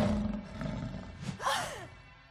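Cartoon big-cat growl sound effect for a shadowy black panther, a low snarl that is loudest at the start and fades away, with a brief gliding higher note about one and a half seconds in.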